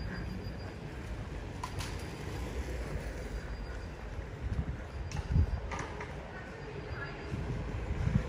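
Outdoor street ambience: a steady low rumble with a few faint clicks and knocks scattered through it.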